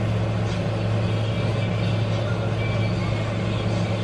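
A steady low hum over a constant hiss of background noise, unchanging throughout.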